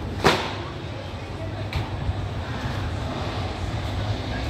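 Quiet open-air market ambience: a steady low rumble with faint, distant voices. One sharp knock or clatter comes just after the start and is the loudest sound.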